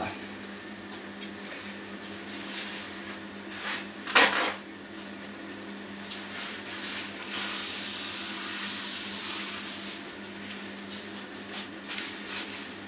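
Shawarma wraps browning in a dry frying pan over a gas burner: a faint frying hiss over a steady low hum, with one short louder noise about four seconds in. The hiss grows stronger for a few seconds just after the middle.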